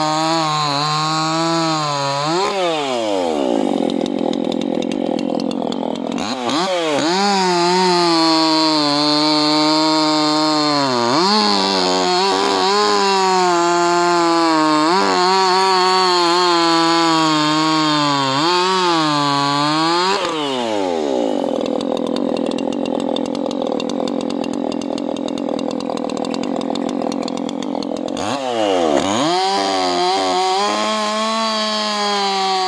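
Maruyama 5100S two-stroke chainsaw cutting through hardwood logs at high revs. The engine pitch sags under load as the chain bites and recovers several times, with stretches of steady cutting, and the revs drop sharply and climb again near the end.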